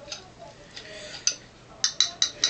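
Light, sharp clicks of small hard objects being handled, two clear ones in the second half, each with a brief high ring.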